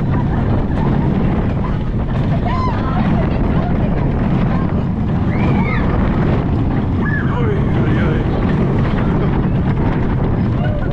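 Steel roller coaster train running along its track, heard from the front seat: a steady low rumble of wheels and wind buffeting the onboard camera, with a few short high squeals.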